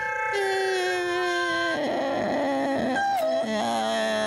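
Wordless vocal wailing by a woman: long held notes that slide slowly downward, waver unsteadily midway, then step up to a higher held note near the end.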